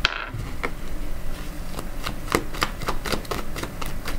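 A deck of tarot cards being handled: an irregular run of light clicks as the cards move against each other.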